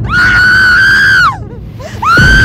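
A girl screaming in terror: one long, high scream held at a steady pitch for over a second, falling away as it breaks off.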